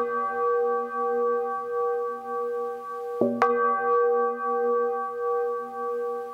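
A bell tolling: two strokes about three seconds apart, each a quick double hit followed by a long ringing tone that wavers as it sustains.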